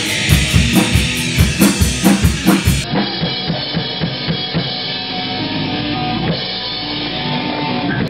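Rock music driven by a drum kit: a fast, steady kick-drum beat for about the first three seconds, then the sound changes abruptly, as at an edit, to music without the strong kick pulse. The music stops suddenly at the end.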